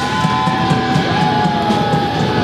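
Live rock band playing, an electric guitar holding a long high note that bends and slides downward, over drums and cymbals.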